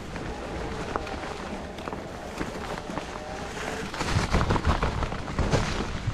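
Mountain bike rolling along a rocky singletrack covered in dry leaves: the tyres run over the leaves while the bike rattles and knocks over rocks and roots. The ride gets rougher from about four seconds in, with heavier knocks.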